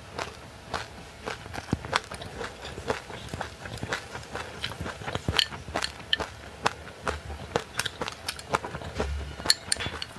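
Close-miked chewing of frozen passionfruit pulp with sesame seeds: a dense, irregular run of crisp crunches and cracks, several a second.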